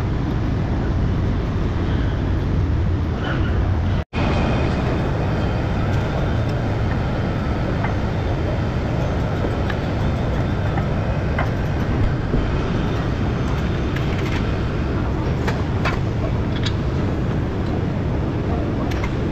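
Steady workshop background noise with a low rumble, with a few light metallic clicks in the second half as brake parts are handled at the wheel hub. The sound drops out for an instant about four seconds in.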